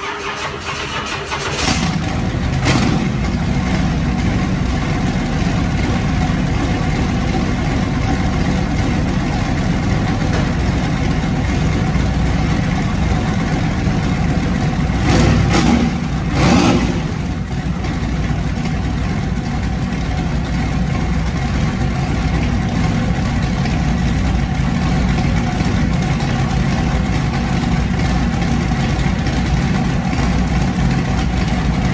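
Turbocharged small-block Chevy V8 running on E85, freshly fitted with a Comp Cams 280HR hydraulic roller cam, starting up from cold. It cranks briefly and catches a little under two seconds in, gives a short rev right after, and then idles steadily, with two brief revs about halfway through.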